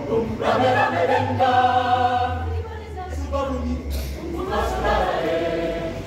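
Mixed choir of men's and women's voices singing sustained chords, with a short break a little past halfway before the voices come back in.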